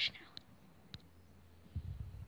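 Faint handling noise from a sponge-tip applicator being lifted off a plastic toy makeup palette: a couple of light clicks, then a few soft low bumps near the end.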